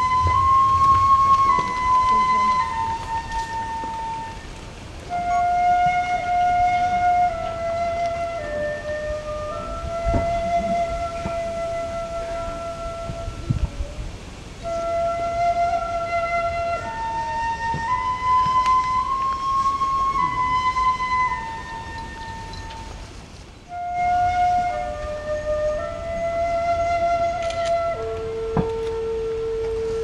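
Japanese bamboo flute playing a slow melody of long held notes that step up and down in pitch, with a short break about three-quarters of the way through, then a long steady lower note near the end.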